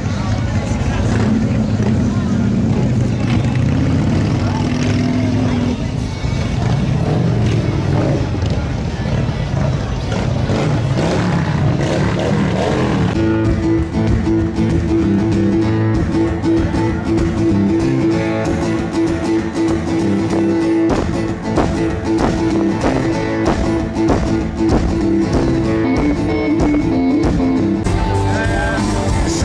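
Crowd chatter mixed with motorcycle engines for about the first thirteen seconds. Then the sound cuts abruptly to a band playing live on acoustic and electric guitars, upright bass and drums, which carries on to the end.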